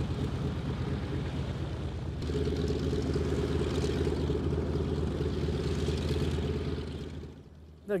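A Mitsubishi Zero fighter's 14-cylinder twin-row radial piston engine running on the ground at low power, with a steady, rapid run of firing pulses. The sound grows fuller and louder about two seconds in and fades away near the end.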